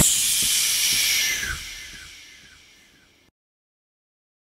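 A hissing wash of noise left as the intro music ends, with faint repeating downward swoops, fading out over about two and a half seconds into silence.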